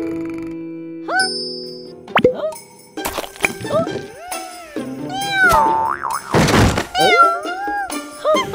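Cartoon sound effects over light music: a springy boing, then a kitten meowing in short rising-and-falling calls, repeated many times from about three seconds in, with a short noisy crash about two-thirds of the way through.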